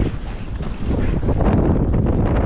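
Strong gusting wind buffeting the microphone: a loud, steady rumble.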